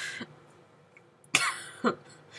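A woman coughing: a short breath near the start, then two sharp coughs about half a second apart near the end.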